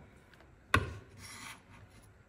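A kitchen knife knocks once on a bamboo cutting board, then its blade scrapes across the wood for about a second, gathering up minced garlic.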